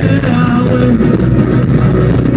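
Live rock band playing an instrumental stretch, with acoustic guitar, keyboard and hand drums, picked up loud by a crowd-side phone.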